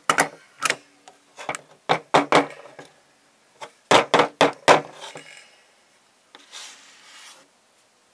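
Heavy-duty all-metal Swingline stapler being pressed down and worked open by hand: a string of sharp metal clacks in two quick clusters, then a fainter scrape near the end.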